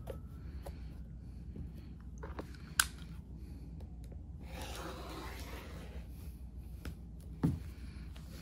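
Fabric being cut and handled on a cutting mat under a clear quilting ruler: a few sharp ticks, the loudest a little under three seconds in, and a soft rasping cut through the fabric around the middle.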